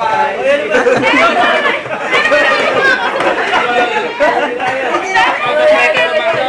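Several voices talking and calling out over one another at once: lively group chatter.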